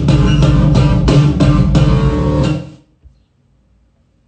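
Guitar-led music with an even strummed beat, about three strokes a second, that cuts off nearly three seconds in and leaves near silence.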